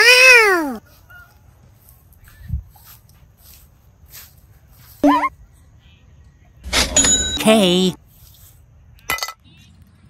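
Cartoon sound effects: a pitched tone sliding down at the start, a short rising squeak about five seconds in, and a warbling high-pitched cartoon voice clip around seven seconds, with a brief chirp near the end.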